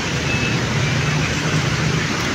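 Steady street traffic noise: motorbikes and cars passing, with a low, even engine drone.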